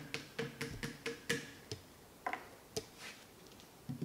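Light clicks and taps on a glass laboratory flask as it is handled: a quick, irregular run of small clicks over the first two seconds with a faint ring behind them, then a few sparser clicks, the last as the cap goes on.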